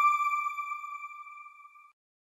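A single electronic chime ringing out and fading away, the closing sting of a TV channel's logo ident.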